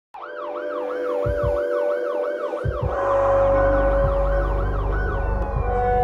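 An emergency-vehicle siren in a fast yelp, rising and falling about three times a second and fading out near the end. Under it are a steady tone, two low thumps, and a deep rumble that comes in about halfway through.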